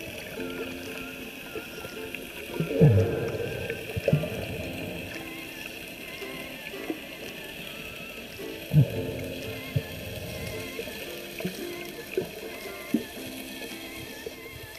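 Muffled underwater sound heard through a submerged camera: water moving around it, with a few loud, short whooshes that slide down in pitch, the biggest about three seconds in and near nine seconds.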